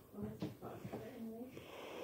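A child's quiet, wordless voice: short low mumbled sounds, then a breathy exhale near the end.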